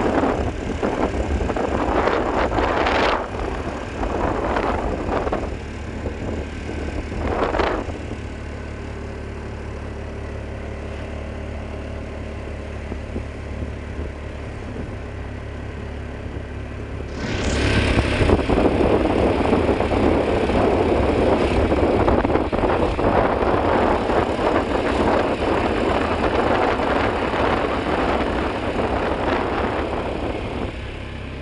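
Motorcycle running on the road, heard from the pillion seat: a steady low engine hum under rushing noise. The noise swells a few times in the first eight seconds, then grows suddenly louder about seventeen seconds in and stays loud.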